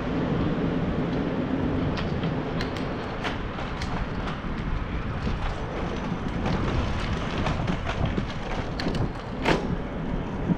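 Steady rushing and rolling noise of a ride through an alley, with wind on the microphone. A low hum fades out in the first second or so, and a few sharp ticks come through, the clearest near the end.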